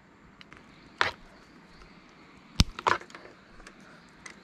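Small pointed scissors snipping the white outer jacket of an eight-core network patch cable: a sharp snip about a second in, then two more in quick succession past the middle.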